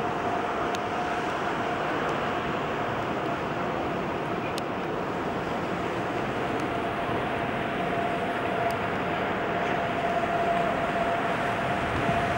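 Steady city background noise, a constant rush of distant traffic, with a thin steady hum running through it and a few faint clicks.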